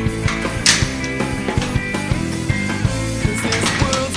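Rock background music with a steady beat, instrumental with no vocals.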